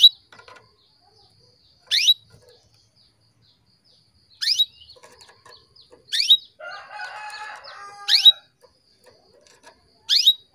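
Female canary giving short, sharp upward-sweeping chirps, five of them spaced a second and a half to two and a half seconds apart: the female's call that is meant to rouse a male canary into song. A lower, longer call sounds behind it for about a second and a half past the middle.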